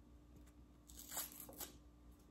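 Small paper-foil alcohol prep pad packet being torn open by hand: a short tearing rip about a second in, lasting under a second.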